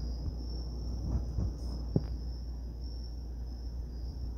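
Background room noise: a steady high-pitched whine with a low hum beneath it, and one short click about two seconds in.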